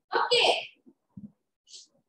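A short, loud burst of a person's voice with a strong hiss in it, about a tenth of a second in, then a brief faint hiss near the end.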